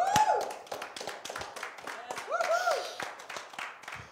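A small group clapping with separate, irregular claps, while voices call out over it at the start and again about halfway through.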